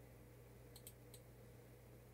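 Three faint computer mouse clicks a little under a second in, the first two close together, over a low steady hum.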